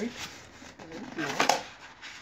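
Stiff paperboard being folded and pushed into a box corner by hand: soft rubbing and scraping of card, with a short crackle of card about one and a half seconds in.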